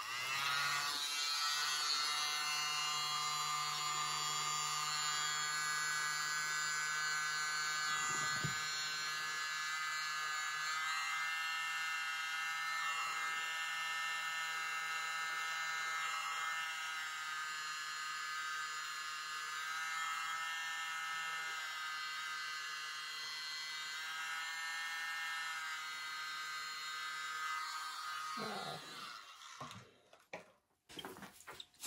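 A tiny handheld electric blower runs steadily with a high motor whine, blowing wet acrylic paint outward into a bloom. Its pitch dips briefly every few seconds, and it switches off near the end.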